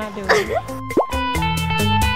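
Light background music with plucked notes, and about a second in a short 'bloop' sound effect that sweeps quickly up in pitch: an editing transition effect.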